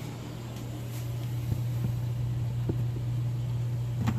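A steady low hum runs throughout, with a couple of faint light taps as a cut metal strap is handled on a plastic cutting board.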